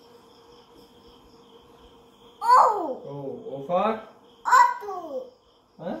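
A toddler babbling in three short, high-pitched vocal bursts with sliding pitch, starting a little over two seconds in. Before that there is only a faint steady hum.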